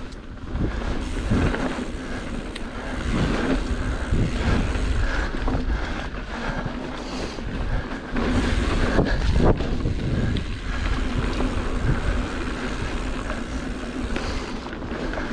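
Wind buffeting the microphone of a chest-mounted action camera as a mountain bike rolls down dirt singletrack, with knocks and rattles from the bike over bumps. It grows louder in gusts a few times.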